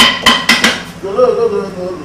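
Metal dishes clanking together in a kitchen sink: four sharp, ringing clanks in quick succession in the first second.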